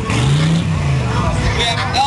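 A lowrider's car engine revs up once and back down over about a second, over a crowd's steady chatter.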